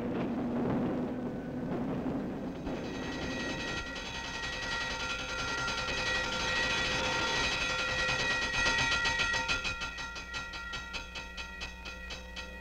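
Film soundtrack: street-traffic noise, then from about three seconds in a sustained high ringing chord. Near the end a fast, even clatter joins it.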